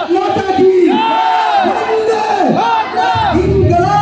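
Several men shouting together, loud overlapping cries that rise and fall. About three seconds in, a deep low music track starts underneath.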